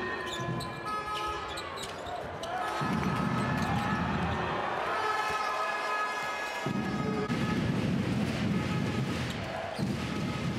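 Live basketball game sound: a ball dribbled on the hardwood court with a steady arena crowd noise behind it.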